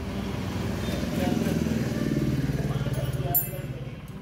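An engine running, growing louder about a second in and then holding steady, with a short sharp clack near the end.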